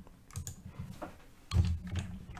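Computer keyboard typing: a few separate keystrokes as a line of a query is edited, then a short low voice sound near the end.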